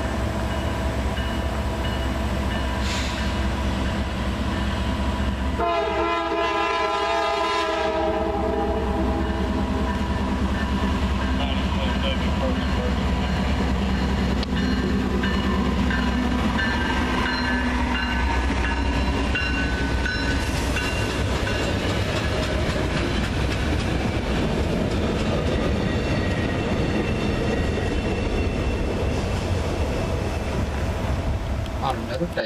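A Norfolk Southern diesel work train, a GE D9-44CW leading an EMD SD40-2, approaches and passes with its engines running and its wheels clacking over the rail joints. The lead locomotive's horn sounds once for about two seconds, some six seconds in.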